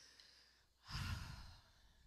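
A single breath or sigh into a close handheld vocal microphone about a second in: a short rush of air lasting about half a second.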